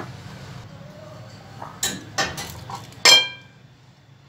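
Kitchen crockery clattering: a few light knocks, then one loud ringing clink about three seconds in, as a plate and spatula knock against glassware.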